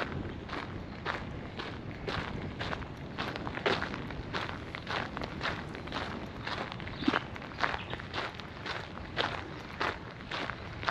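Footsteps of a person walking at an even pace on a compacted gravel path, each step a short crunch, a little under two steps a second.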